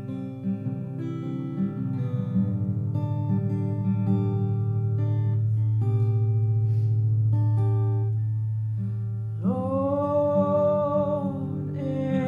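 Live slow song: guitar chords ring out over a long held low note, and a woman's voice begins singing about nine and a half seconds in.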